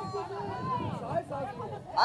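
Indistinct chatter of several people's voices, with no words clearly made out.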